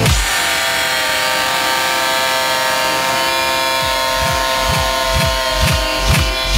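Electronic dance music from a progressive house DJ mix going into a breakdown: the kick drum and bass drop out at the start, leaving held, buzzy synth chords, and a steady kick drum fades back in about four seconds in at roughly two beats a second.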